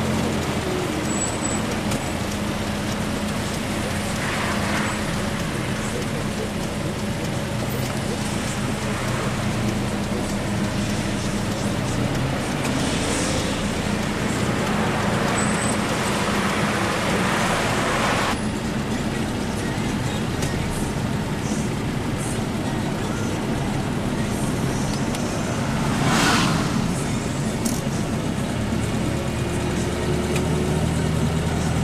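A car driving: a steady engine hum and road noise, with a few louder swells about 4, 13 to 18 and 26 seconds in.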